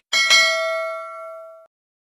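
Bell ding sound effect, struck twice in quick succession, its clear ringing tone decaying over about a second and a half before cutting off abruptly.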